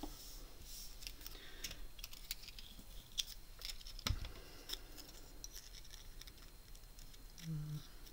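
Paper, washi tape and a small metal cutting die being handled, with small scattered clicks and rustles and a soft knock about four seconds in as a small die-cutting machine is set down on the table.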